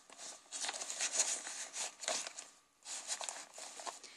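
Aged paper and card rustling and sliding as a card is drawn out of a paper pocket in a journal and handled, in soft, irregular scrapes with a short lull a little past halfway.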